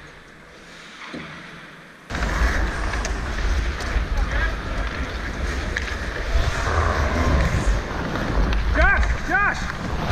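Wind rumbling on a skater-worn action camera's microphone during ice hockey play, starting suddenly about two seconds in and running loud and steady. Two short shouts come near the end.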